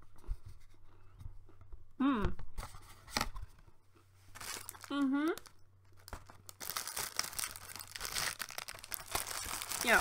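Clear plastic packaging of a tray of savoury biscuits being handled, a dense crackling rustle that starts about two-thirds of the way in and is the loudest sound. Before it come two short closed-mouth hums and a few faint clicks.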